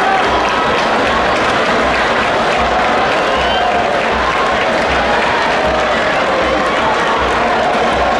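Large stadium crowd cheering and applauding, a steady wall of noise with shouting voices in it and a low beat pulsing about twice a second underneath.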